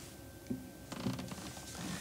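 Quiet creaking and small clicks of an electric guitar being handled and tuned at the headstock, busiest about a second in.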